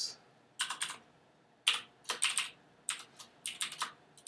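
Typing on a computer keyboard: short, irregular bursts of keystrokes, a few at a time with brief pauses between them.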